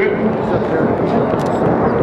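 Two piston-engined Unlimited-class racing warbirds passing low and fast, Strega, a P-51 Mustang with a Rolls-Royce Merlin V-12, in the lead: a loud, steady engine drone.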